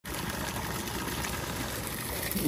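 Water from a garden hose pouring into a black tub, a steady stream filling it.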